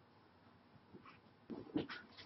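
Near silence, with a few faint soft sounds in the last half second.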